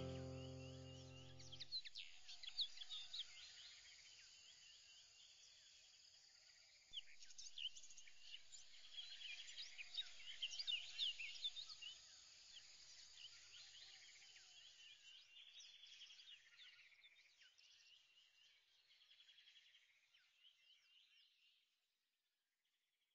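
Faint birds chirping, many quick chirps and trills overlapping, a little louder about seven seconds in and fading out near the end; a few notes of background music end about two seconds in.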